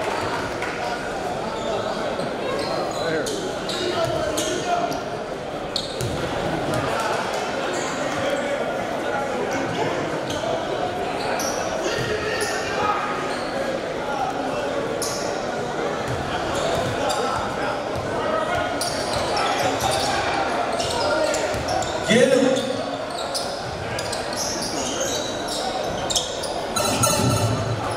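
Basketball gym ambience in a large, echoing hall: a steady murmur of crowd chatter, with a basketball bouncing on the hardwood court as scattered sharp knocks. A voice rises louder for a moment about 22 seconds in.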